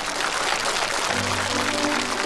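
Studio audience applauding, a dense clapping that starts just before and carries on throughout, with background music coming in underneath about a second in.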